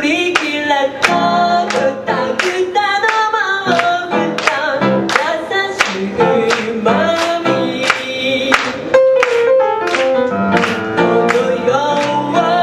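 A woman singing a pop song while accompanying herself on an upright piano, the piano striking chords in a steady rhythm beneath her voice, recorded live.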